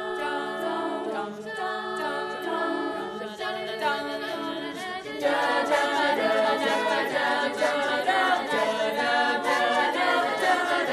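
Teenage girls' a cappella choir singing in harmony with no instruments, backing voices on a rhythmic syllable line under the melody. About five seconds in, the singing becomes louder and fuller.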